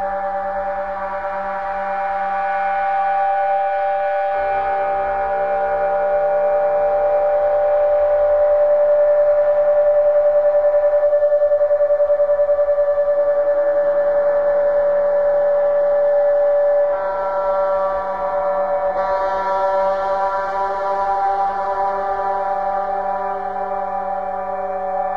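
Experimental drone music: layered sustained tones held at several pitches. Layers shift about 4 seconds in and again near 17 and 19 seconds, and the sound wavers in loudness through the middle.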